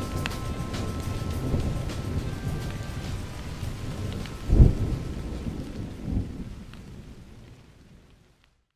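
Rain with rolling thunder, a loud low thunderclap about halfway through and a softer rumble a little later, fading out at the end of a song track.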